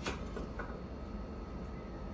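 Low, steady background noise with a faint high steady tone, and a light knock right at the start and a fainter one about half a second in, from aluminium truss tubes being handled in their stackers.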